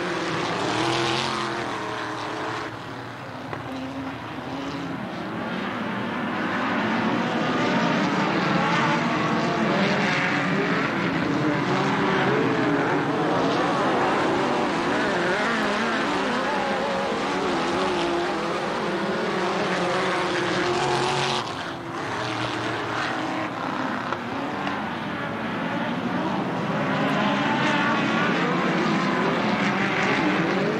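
Engines of a pack of midget race cars running at racing speed, several overlapping engine notes rising and falling in pitch as the cars pass. The sound dips briefly twice, shortly after the start and about two-thirds of the way through.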